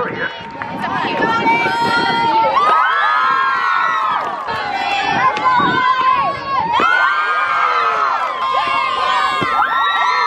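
Many girls' voices yelling a cheer together, loud and high-pitched, in phrases that come about every two seconds.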